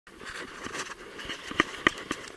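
Handling noise from a hand working a baitcasting reel on a fishing rod: a soft rustle, then two sharp clicks close together near the end.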